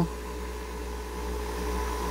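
A steady low machine hum with a few faint, even tones above it, unchanging throughout.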